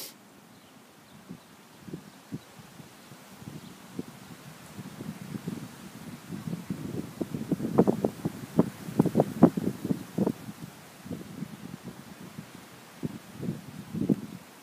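Hoofbeats of horses galloping on a dirt track, a rapid drumming that builds over several seconds, is loudest in the middle and then fades as they pass.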